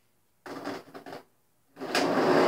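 Brief, quiet clicking and rattling of toy monster trucks being handled on the ramp, a cluster of small knocks from about half a second in that lasts under a second.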